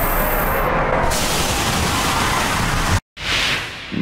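Anime sound effect of the Respira attack, a decaying-breath blast: a loud, steady rushing hiss that cuts off suddenly about three seconds in, then a softer rush swells up and fades.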